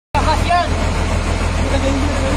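People's voices over a steady, loud low rumble.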